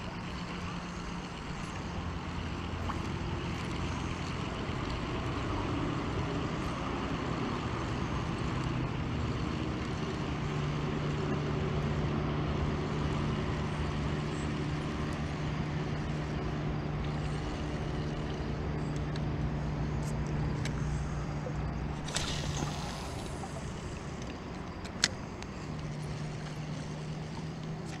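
Steady drone of a distant engine, its pitch holding with small shifts, swelling toward the middle and fading again. A short hiss comes about twenty-two seconds in, and a single sharp click a few seconds later.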